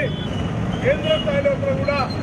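A man's voice raised in speech to a crowd, heard from some distance with a steady low rumble of outdoor noise beneath it.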